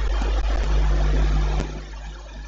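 Steady rushing noise with a low hum from the microphone and sound-system feed, easing slightly near the end.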